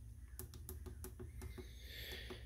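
Faint quick clicks of small tactile push buttons on a motion-controller board being pressed in succession to step through the actuator menu, over a low steady hum.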